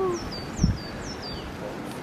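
A small bird calling in woodland: three short high chirps, each dropping in pitch, about half a second apart. A brief low thump sounds about half a second in.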